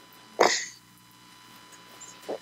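A person sneezing once, a single short, loud burst about half a second in.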